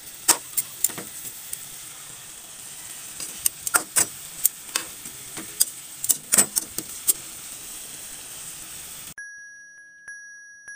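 Pork chops frying in a pan with a steady sizzle, while steel tongs turning them clack against the pan many times. About nine seconds in, the sizzle cuts off abruptly and a held chime-like tone begins.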